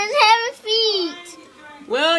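A young girl's high voice vocalizing in a drawn-out, sing-song tone that slides down in pitch and fades out about a second in.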